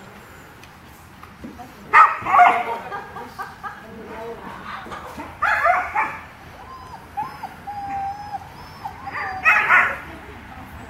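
A dog barking in short, high yips in three loud clusters: about two seconds in, around five and a half seconds, and at the very end. A thin, wavering whine comes in between.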